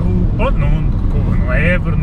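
Steady engine and road noise inside the cabin of a remapped Seat Ibiza 6J 1.6 TDI common-rail diesel on the move, with a low, even hum under the voices.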